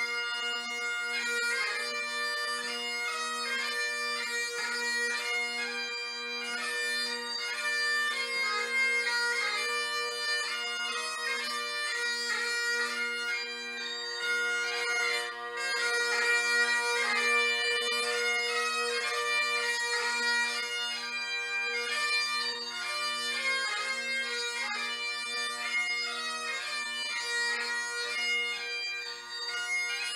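Great Highland bagpipe played live: steady drones sound under a quick-moving chanter melody.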